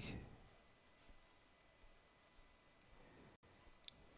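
Near silence: faint room tone with a few soft computer mouse clicks spread through, one a little sharper near the end.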